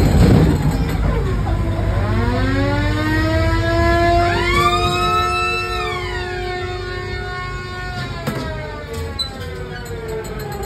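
Siren-like wailing sound effect inside a dark fairground ride: one wail rises about two seconds in and holds, a second, higher one rises about four seconds in, and both slide back down and fade by about eight seconds, over a steady low rumble.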